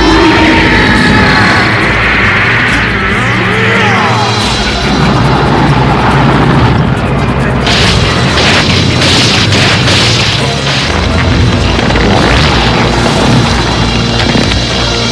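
Cartoon battle sound effects, booming blasts and crashes, over dramatic background music, with a run of sharp impacts a little past the middle.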